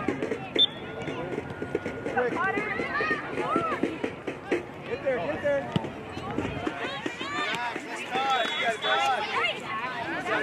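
Overlapping shouts and calls from several people across a soccer field, none of it clear speech. A single sharp knock comes about half a second in.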